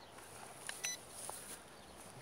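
A short, faint electronic beep about a second in, with a light click just before it: the JJRC H8C quadcopter's remote control signalling while it is being bound to the drone.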